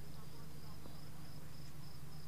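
Faint, steady background: a low hum under a thin, high-pitched insect trill that pulses on and off.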